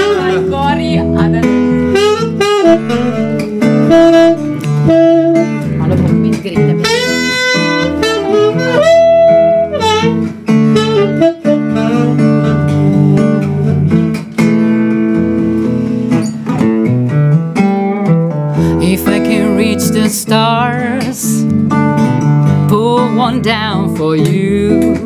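Live blues played on acoustic guitar and saxophone. The guitar keeps up a steady accompaniment while the saxophone plays a melody with bends and vibrato.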